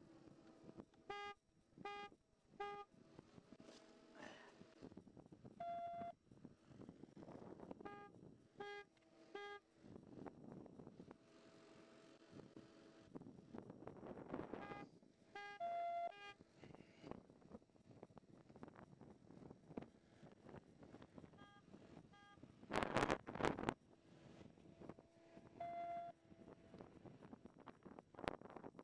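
Electronic beeps inside a patrol car: groups of three short beeps repeating every six or seven seconds, with a single lower tone about every ten seconds. A brief loud rustle or knock comes near the end.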